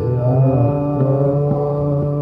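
Hindustani classical male vocal in raag Kaushik Dhwani over a steady tanpura drone. The voice holds a long note, bending in pitch about half a second in.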